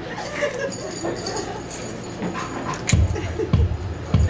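Faint room sounds with a thin whine, then about three seconds in a steady low thumping beat starts, just under two thumps a second, as the song gets under way.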